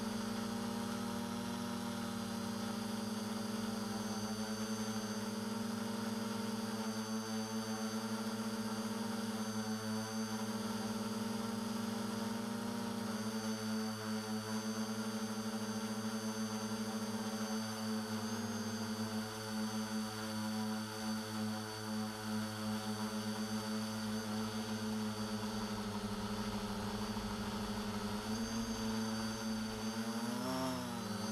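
Quadcopter's four 1100 kV brushless motors and 9-inch carbon propellers humming steadily, picked up by the camera mounted on the frame. The pitch shifts slightly now and then and wavers up and down near the end.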